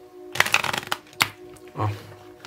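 A deck of oracle cards being riffle-shuffled by hand: a quick rippling flutter of cards for about half a second, followed by a single sharp click.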